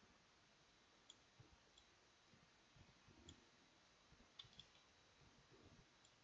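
Near silence with a handful of faint, sharp clicks from a computer mouse and keyboard, spaced about a second apart, with two close together past the middle.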